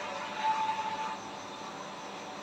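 Steady hiss of air bubbles streaming from an aquarium air stone, with a brief faint tone about half a second in.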